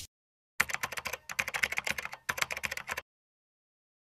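Keyboard-typing sound effect: rapid clicks in three short runs, starting about half a second in and stopping abruptly about three seconds in.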